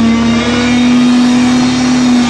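Distorted electric guitar of a live hardcore punk band holding one long, loud, steady note through the amplifier, over the band's noisy wash.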